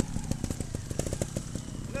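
Trials motorcycle engine idling, a rapid uneven popping of exhaust pulses.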